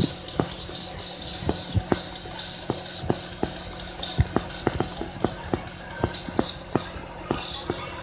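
Sharp taps or clicks, about three a second, over a steady low hum inside a school bus.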